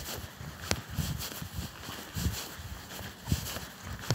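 Bare feet walking on grass: soft, irregular footfalls, with two sharper clicks.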